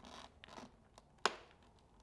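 Visor-lock switch on an X-Lite X-803 RS motorcycle helmet, pressed into its locked position with one sharp click a little over a second in, after faint rubbing of fingers on the visor and shell.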